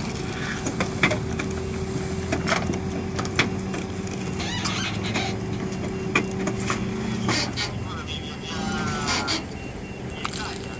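Flatbed tow truck's winch and engine running steadily as a car is dragged up the tilted bed, with metallic clicks and knocks. The hum drops out about seven seconds in, and voices talk in the background.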